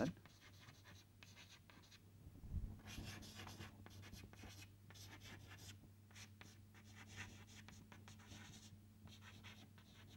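Faint chalk writing on a blackboard: a string of short scratchy strokes as words are written, with a soft thump about two and a half seconds in, over a low steady hum.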